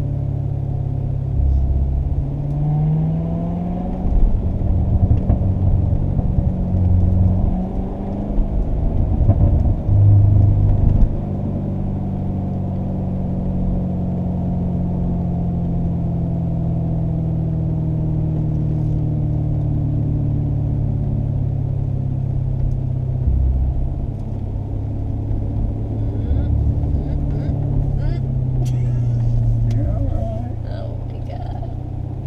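A 2015 Corvette Stingray Z51's 6.2-litre V8 heard from inside the cabin while driving a winding downhill road, held in second gear. The engine note rises and falls with the throttle, with a rougher, louder stretch early on, then a long, slowly falling note through the middle, and a rise again near the end.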